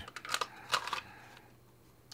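A few light clicks and rattles from a pistol fitted with a light and optic being handled and put down, bunched in the first second and then fading to faint room tone.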